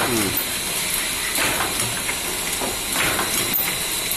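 Three-dimensional cellophane overwrapping machine running, a steady mechanical hiss with a short stroke of the mechanism twice, about a second and a half apart.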